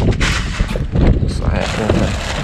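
Wind buffeting the microphone in uneven low thumps, mixed with plastic produce bags and cardboard crinkling and rustling as they are handled.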